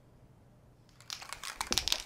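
Spray paint cans clicking and rattling as they are handled, with a quick run of irregular clicks starting about a second in.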